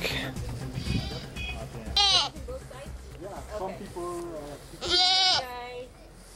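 A goat bleating twice, about two seconds in and again about five seconds in, each a short quavering call, with faint voices underneath.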